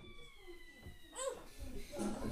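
A short, wavering voice-like call about a second in, over a faint, steady high tone that falls slightly in pitch and stops just after the call.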